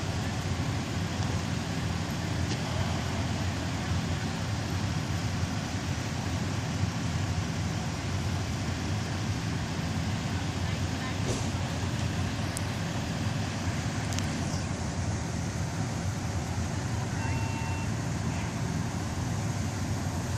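A vehicle engine running steadily at idle, a continuous low rumble.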